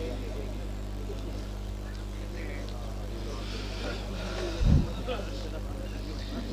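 Steady electrical hum from a public-address system in a pause between speech, with faint voices in the background. A single low thump comes about three-quarters of the way through.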